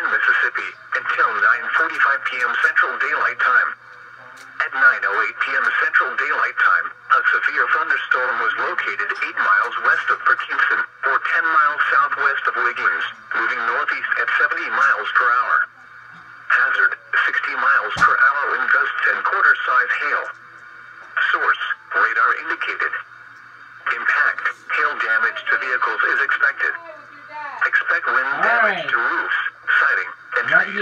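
NOAA Weather Radio broadcast voice reading a severe weather warning, sounding thin through a weather radio's small speaker. One sharp click about 18 seconds in.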